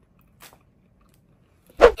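Near silence, broken by a faint click about half a second in, then a short, loud "uh-hum" from a person with a thump under it near the end.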